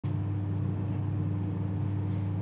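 A steady low hum with a thin constant higher tone over it, unchanging throughout.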